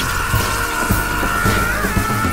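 Trailer music with a heavy rock-style beat, thudding about twice a second. A single high note is held throughout and wavers near the end.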